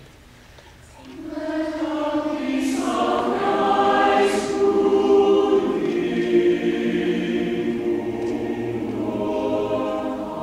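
Mixed choir of women's and men's voices singing, entering about a second in and holding sustained chords.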